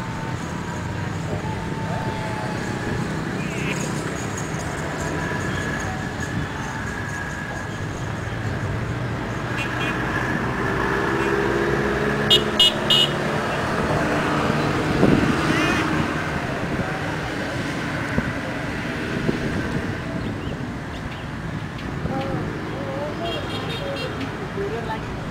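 Radio-controlled model airplane's motor buzzing as it flies around overhead, its pitch shifting up and down as it passes. A few sharp clicks about halfway through.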